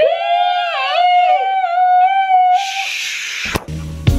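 A high voice sings one long, wavering note for about three seconds, followed by a short hiss. Music with a low bass line starts near the end.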